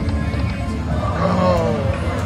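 Autumn Moon video slot machine playing its reel-spin music and effects as the last reel spins and stops short of the sixth coin for the Hold & Spin feature, with a falling, wavering tone in the second half.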